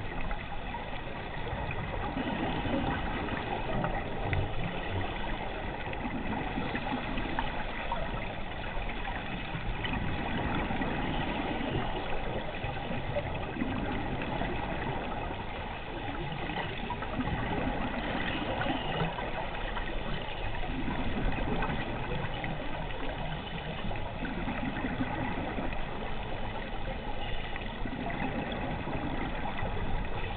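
Underwater ambience recorded on a diver's camera: scuba regulator breathing, with exhaust bubbles coming in swells every several seconds over a steady hiss and faint steady tones.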